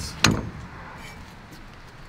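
A single sharp knock about a quarter second in, then a low, steady outdoor background.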